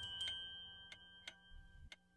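A clock ticking softly in a silent pause, with the last ringing notes of a chiming music cue dying away.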